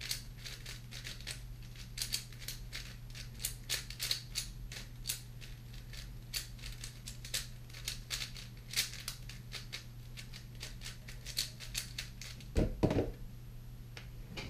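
Plastic 4x4 speed cube being turned by hand: rapid, irregular clicking and clacking of its layers. A louder thump comes near the end.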